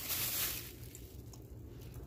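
Thin plastic produce bag crinkling briefly as it is handled, fading to quiet room tone within the first second.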